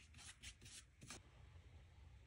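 Near silence with a few faint, soft strokes of a paintbrush spreading mixed media glue over fabric, mostly in the first second.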